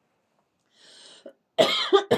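A person draws a short breath, then coughs loudly near the end.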